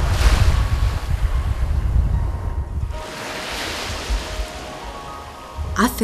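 Small waves breaking and washing up on a sandy shore, with wind buffeting the microphone and causing a low rumble.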